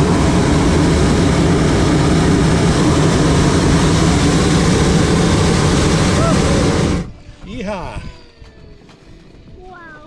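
Hot air balloon's propane burner firing in one long, loud, steady roar that cuts off suddenly about seven seconds in, heating the envelope to lift the balloon off the ground.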